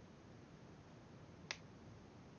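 Near silence with a single sharp click about one and a half seconds in.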